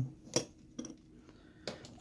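Small metallic clicks and clinks from a gas valve and its loose parts being handled on a wooden bench: one sharp click about a third of a second in, then a few fainter ticks.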